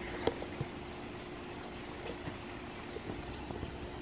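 Steady rain heard from inside the house: an even wash of noise with a few faint drip-like ticks, over a faint steady hum. A single light click sounds about a quarter of a second in.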